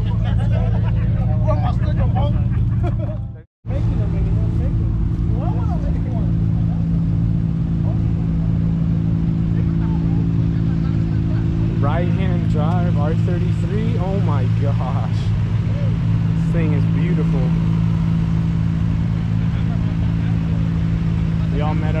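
A car engine idling steadily, with people talking over it. The sound drops out for a moment about three and a half seconds in.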